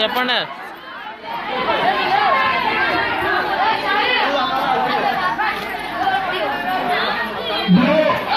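Crowd chatter: many people talking at once in overlapping voices, easing briefly about a second in.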